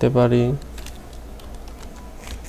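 A few light keystroke clicks on a computer keyboard as a short word is typed.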